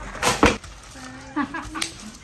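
Scuffle sounds: two quick knocks about a quarter and half a second in, then a short voice and a sharp click near the end.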